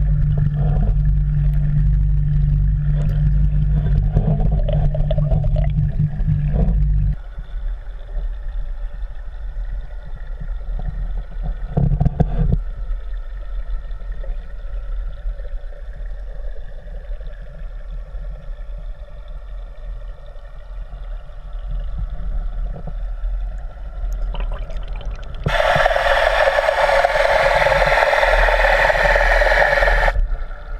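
Muffled underwater noise picked up by a GoPro camera in its waterproof housing: a steady low hum for the first several seconds, then a duller low rumble with a short knock about twelve seconds in. About 25 seconds in, a loud hiss starts suddenly and runs to the end.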